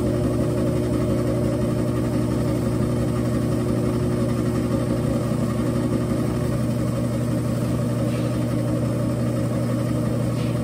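Round-column Rong Fu-type mill-drill running steadily, its spindle turning a spiral end mill as it mills a flat onto a steel bolt shaft. It makes a steady motor hum with a few fixed tones. A higher tone in the hum drops out about two-thirds of the way through.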